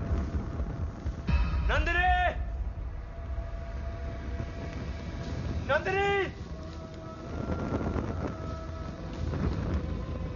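Low vehicle rumble under background music, with two short voice-like calls that rise and fall in pitch, about two seconds in and about six seconds in.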